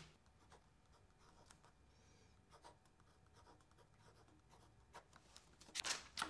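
Faint scratching of a pen writing on paper, with a few light clicks and taps near the end; otherwise near silence.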